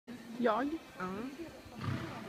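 A person's voice calling out "jā" about half a second in, with a loud, wavering pitch, followed by a shorter falling vocal sound.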